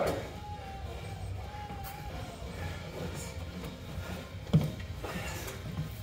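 Room tone of a large hall with a steady low hum, and a single sharp thump about four and a half seconds in.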